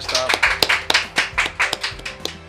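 Two people applauding with their hands: a brisk run of claps, about six a second.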